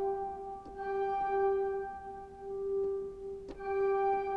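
Pipe organ sounding one sustained flue-like note, played from a velocity-sensitive keyboard and restruck about a second in and again near the end. The key is hit fast, which on this system changes the registration dynamically, so a fuller set of stops speaks than with a slow touch.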